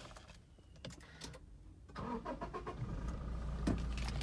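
Toyota Fortuner's 2.4-litre four-cylinder diesel engine starting about two seconds in and settling into a low, steady idle, heard from inside the cabin.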